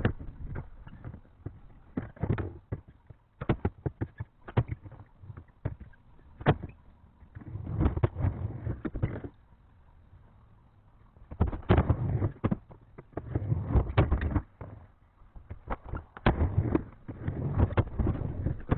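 Skateboard rolling on a plywood bank ramp, its wheels rumbling over the boards in several passes, with sharp clacks of the board and wheels hitting the wood. There is a short lull in the middle.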